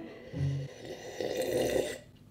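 A man drinking water from a mug, with a brief low hum about half a second in followed by a second or so of swallowing and breathing noise.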